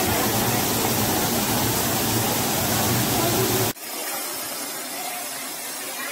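Water spraying from a burst water pipeline in a tall jet: a loud, steady rushing hiss. Near the end it cuts off suddenly to a quieter, thinner rush.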